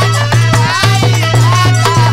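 Live Bhojpuri birha folk music: harmonium and dholak playing, with drum strokes coming several times a second under a melody line that bends in pitch.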